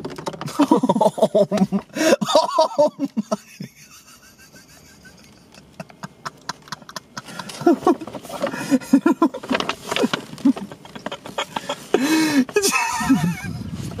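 Wordless human voices, laughing and exclaiming, in two bouts with a quieter stretch in the middle.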